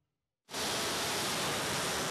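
Rail-launched ballistic missile's rocket motor at lift-off: a steady rushing noise that starts abruptly about half a second in, after a moment of silence.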